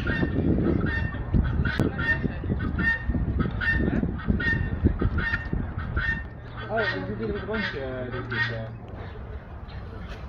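Helmeted guineafowl calling: short, harsh calls repeated two to three times a second, stopping near the end, over a low rumble during the first six seconds.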